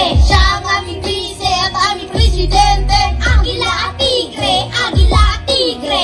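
Children rapping in Tagalog into microphones over a hip-hop backing track with a deep bass beat whose notes slide down in pitch, played through a stage PA.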